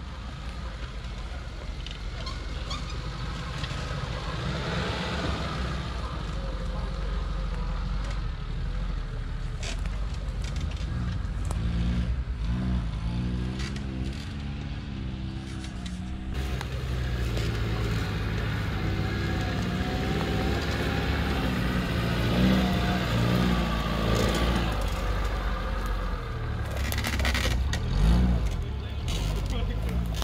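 Small Suzuki 4x4's engine revving up and down under load as it crawls up a steep dirt climb. The sound changes abruptly about halfway through.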